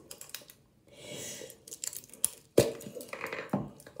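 Plastic slime tub being handled and opened: scattered clicks and crinkling, a short tearing sound about a second in, and two knocks in the second half.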